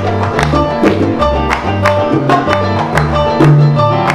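Salsa band playing an instrumental passage: a repeating bass line and a melodic line over steady, sharp percussion strikes.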